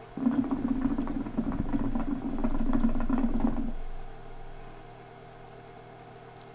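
Water in a hookah base bubbling and gurgling as smoke is drawn through the hose, a continuous pull of about three and a half seconds that stops when the draw ends.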